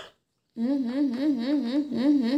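A voice humming a long 'hmm' from about half a second in, its pitch wobbling steadily up and down about six times a second. Just before it, a short sharp call dies away.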